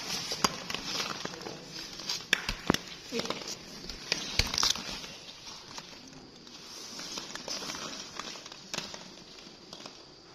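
Hollow plastic ball-pit balls rustling and clicking against one another as they are pushed and grabbed, with a few sharper knocks scattered irregularly through.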